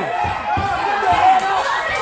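Several onlookers' voices shouting and talking over one another, the kind of overlapping chatter of a small crowd.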